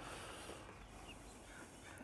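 Quiet outdoor background: a faint steady hiss of ambient noise, with a couple of very faint short high sounds about a second in.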